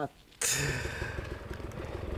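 Off-road dirt bike engine idling steadily, cutting in abruptly about half a second in.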